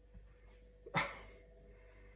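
A man's single short, sharp snort through the nose, a stifled laugh, fading within about half a second.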